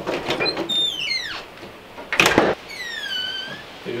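A glass-panelled porch door being opened. High squeaks slide down in pitch about a second in, there is a short loud rush of the door moving just after halfway, then another squeak falls and levels off.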